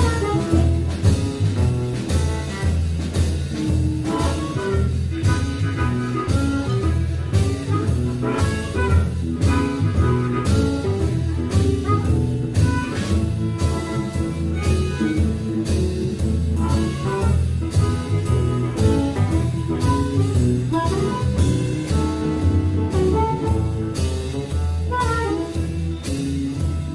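Live blues band instrumental: an amplified harmonica, played cupped around a hand-held microphone, takes the lead over drums and bass with a steady beat.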